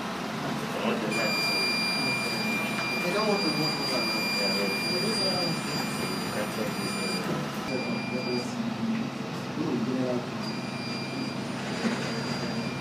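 Indistinct talk from several people in a small room. A steady high-pitched whine runs through much of it: it starts about a second in, cuts out and comes back a few times.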